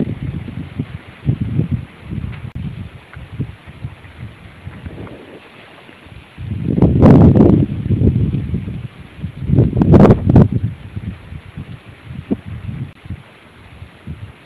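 Wind buffeting the microphone in irregular gusts under a thunderstorm sky, with two strong surges in the middle, about three seconds apart.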